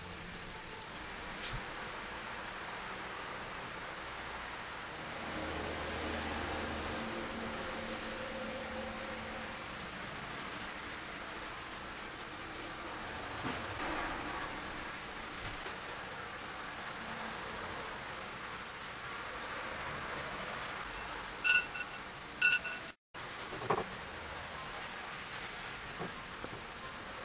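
Steady hiss, with two short high whimpers from a dog about a second apart near the end, followed by a brief rising whine.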